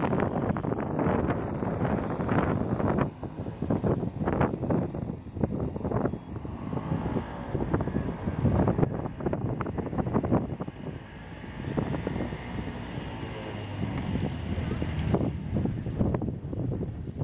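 Wind buffeting the microphone: an irregular low rumble that rises and falls in gusts.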